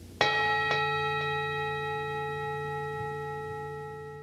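A bell-like chime struck once, then twice more lightly about half a second apart, its tones ringing on over a low steady hum and slowly fading.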